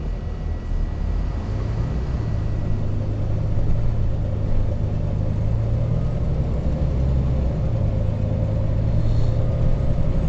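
Bus engine and road noise heard from inside the passenger cabin while moving: a steady low drone with a faint steady whine above it.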